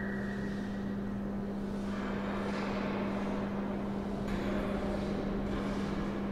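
A steady low machine hum over a wash of indistinct background noise.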